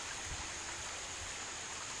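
Steady rush of flowing water from a rain-swollen river, an even noise with no distinct events.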